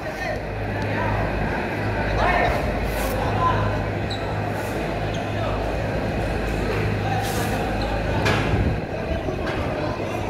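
Indistinct voices of people talking in a gym, over a steady low hum.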